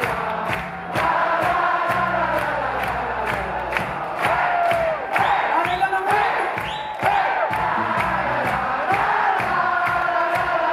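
Live band playing an up-tempo disco-soul number with a steady beat of about two a second, a woman singing lead into a microphone while many voices sing along.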